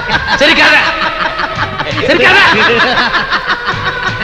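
A man laughing in a run of snickering chuckles over background music.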